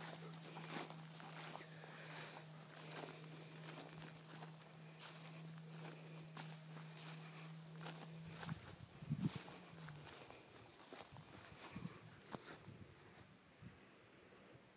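Faint outdoor field ambience: insects trilling steadily, with scattered soft steps and rustles in grass. A low steady hum runs underneath and stops about two-thirds of the way through.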